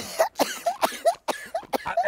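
Men laughing hard in rapid breathy bursts, several a second.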